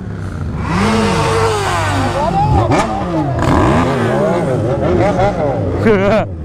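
Several motorcycle engines, the rider's Yamaha XJ6 inline-four among them, revved hard again and again under a viaduct: a racket of overlapping sweeps in pitch, rising and falling.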